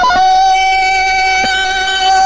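The Tarzan yell: a man's jungle call that breaks like a yodel at the start, then holds one long, high, steady note.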